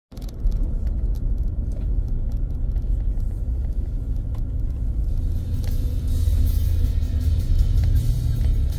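Car driving slowly, heard from inside the cabin as a steady low rumble, with music playing over it.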